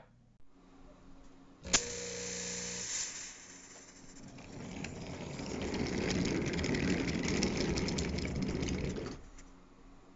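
Wooden toy train vans rolling along wooden track: a rumble with a rapid patter of clicks that builds to its loudest in the middle and fades out near the end. Before it come a sharp click and a short steady hum.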